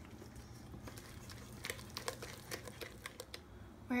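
Wooden spatula working thick waffle batter in a stainless steel bowl: soft scraping, then a quick run of light clicks and scrapes in the second half.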